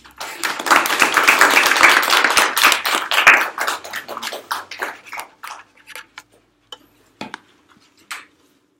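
A small group applauding, loud for about three seconds and then thinning to a few scattered claps that die out about six seconds in.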